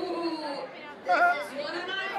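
Voices chattering in a crowded indoor bar, with one voice louder and closer about a second in.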